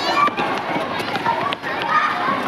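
Many young children's voices shouting and chattering at once, over the patter of running footsteps on a paved schoolyard.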